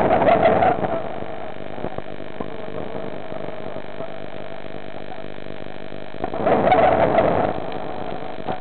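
A diver exhaling underwater, the breath bubbling out of the breathing gear in two bursts about six seconds apart. A steady electrical hum runs underneath.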